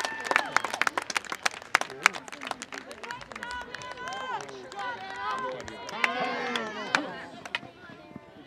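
Spectators clapping and cheering, with voices calling out. The clapping is dense at first and thins out after about three seconds, leaving mostly voices.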